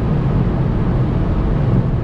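Inside the cabin of a 2019 VW Golf GTI Performance accelerating at about 220 km/h: a steady rush of road and wind noise, with the 2.0-litre turbocharged four-cylinder's low drone staying in the background.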